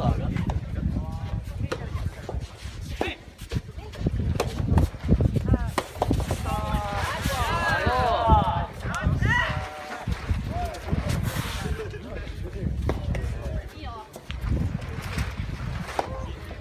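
Soft tennis play: scattered sharp pops of rackets striking the soft rubber ball over a steady low wind rumble on the microphone, with several voices calling out at once for a few seconds near the middle.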